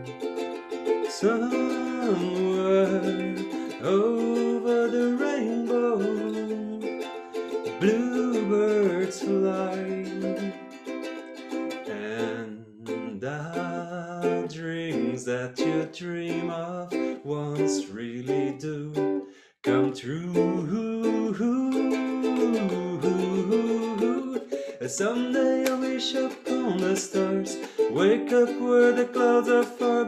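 Ukulele strummed in steady chords while a man sings the melody along with it. The sound drops out for a moment about two-thirds of the way through, then the song carries on.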